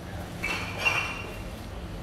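A brief high-pitched clink with a short ring, starting about half a second in and sharpest just before the one-second mark, over steady street background noise.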